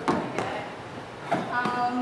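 Feet in sneakers landing on an aerobics step platform during jumping switch lunges: three sharp thuds, a little under and then about a second apart. A short vocal sound follows near the end.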